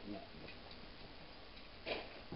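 Kitchen knife dicing eggplant on a plastic cutting board: a few faint ticks of the blade, then one sharper knock on the board near the end.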